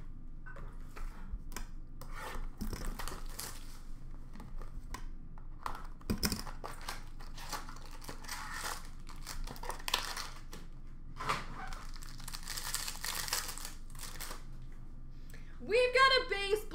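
Hockey card pack wrappers being torn open and crinkled by hand in several bursts, with cards being handled between them.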